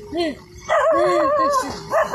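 A man crying aloud: short sobbing catches, then a long wail with a wavering, breaking pitch in the middle.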